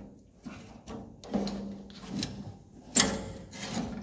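Hand-turned planting-finger mechanism of a saltbush transplanter clunking and rubbing as the fingers carry a seedling around and down. Several irregular knocks, the loudest about three seconds in.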